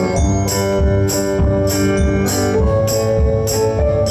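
Live band playing an instrumental passage without vocals: held keyboard chords over electric guitar, with drums keeping a steady beat, cymbal strokes about twice a second and regular bass-drum hits.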